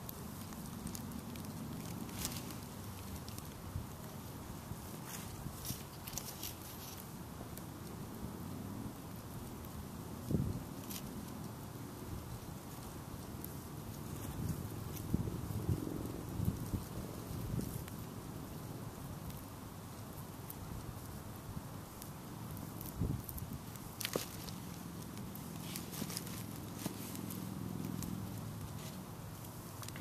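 Small wood fire burning with faint crackles and a few sharp pops, over a low steady background rumble.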